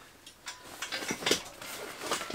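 A fabric saddlebag being set onto a bike's tubular rear rack: rustling, with a few light clicks and knocks as its clips and buckles meet the rack from about half a second in.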